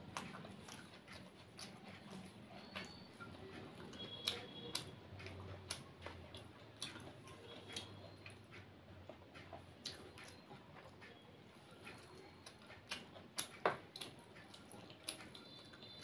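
Close-up eating sounds: faint, irregular small clicks and smacks of chewing, with fingers breaking up a piece of fried food on a plate. A few of the clicks stand out louder.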